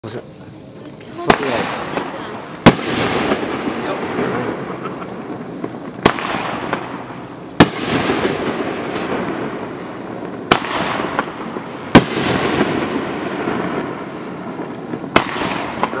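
Aerial firework shells launching and bursting: sharp bangs come in pairs about a second and a half apart, four times over, with a crackling hiss between the bangs.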